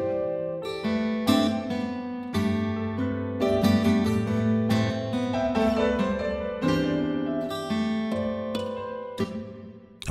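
CinePiano sampled virtual piano playing a melody over sustained low chords in software playback. The notes fade away near the end.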